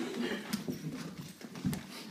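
Two puppies wrestling on the floor: their paws and claws scrabble and tap in short, irregular clicks.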